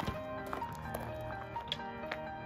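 Background music with held notes that change every half second or so and a few light taps.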